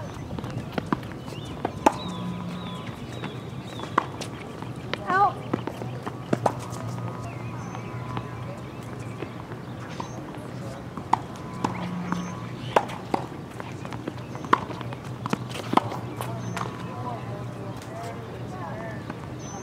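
Tennis rally on a hard court: the ball struck by rackets and bouncing, a series of sharp pops at uneven spacing, with a cluster about five seconds in and several more later.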